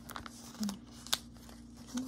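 Glossy catalogue pages being handled and turned: papery rustles and a few short sharp clicks, the sharpest about a second in.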